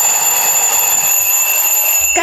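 Alarm clock ringing: a loud, steady, high-pitched ring.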